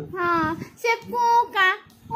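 A baby's high-pitched, sing-song vocalizing: four short squealing calls that rise and fall in pitch.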